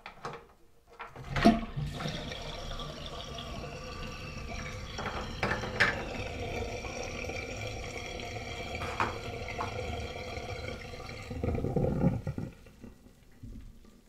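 Soapy water draining from a stainless-steel sink after the plug is pulled about a second in: a steady rush down the plughole, swelling into a louder gurgle near the end as the last of the water goes, then stopping.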